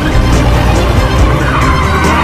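A car driving fast with its tyres skidding, a screech that builds in the second half, mixed over loud background music.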